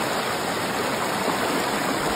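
Shallow, fast mountain river rushing over boulders close by: a steady, even rush of water.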